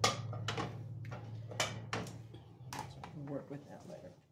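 A cast iron waffle iron being handled on the cast iron top of a wood cook stove: several separate light metal knocks and clanks spread over the few seconds, over a steady low hum.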